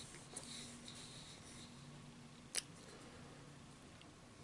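Faint close-miked mouth sounds of a person chewing food, with small clicks and one sharp click about two and a half seconds in, over a low steady hum.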